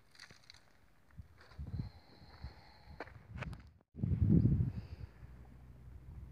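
Irregular low rumbling bursts of noise on a handheld camera's microphone outdoors, loudest for about a second just after a brief dropout near the middle.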